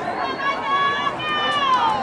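A spectator yelling encouragement to the runners in two long, high-pitched shouts, the second falling in pitch at the end, over faint crowd noise.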